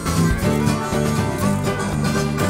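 A TV show's break-bumper music jingle plays at a steady level, with held notes over a quick run of plucked notes.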